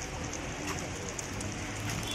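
Rain falling on wet paving: a steady hiss with scattered small drop ticks.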